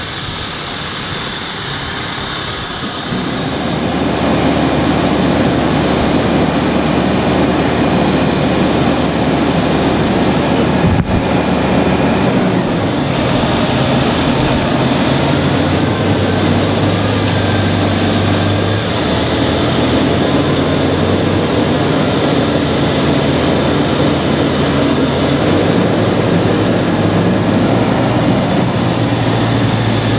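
Fendt 936 Vario tractor's six-cylinder diesel engine running steadily under load, hooked to a Veenhuis slurry tanker. It is quieter for the first few seconds, then louder and even.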